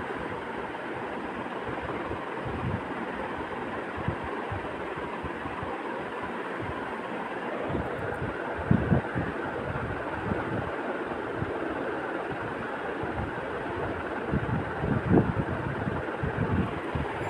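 Potato wedges frying in spiced oil and masala in a wok, a steady sizzle with a few soft low bumps near the middle and the end.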